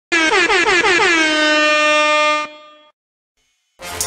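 Audio logo sting: a loud horn-like blast that stutters in quick repeated downward swoops, then holds one steady note and cuts off about two and a half seconds in. After a short silence, music starts near the end.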